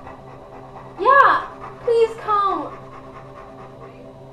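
A young woman's high-pitched crying: two wailing sobs about one and two seconds in, each rising and then falling in pitch, with quieter stretches between.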